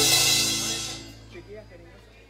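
Live band ending a song: a held final chord with a cymbal crash ringing out over it, fading away about a second in.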